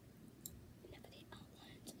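Near silence: room tone with a few faint small clicks and soft handling sounds from a makeup brush and plastic compact.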